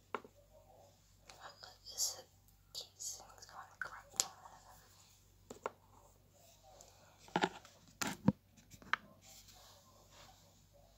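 Plastic lip balm tubes being handled and set down on a table: scattered clicks and taps, the loudest a cluster of knocks about seven to eight seconds in. Soft whispering comes in the first few seconds.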